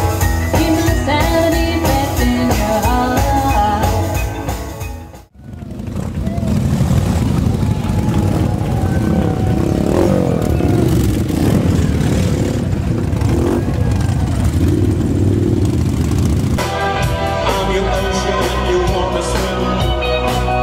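Live band music with singing, electric guitar and drums fades out about five seconds in. Then a column of big cruiser motorcycles rides slowly past, with several engines rising and falling in pitch. Band music starts again about three seconds before the end.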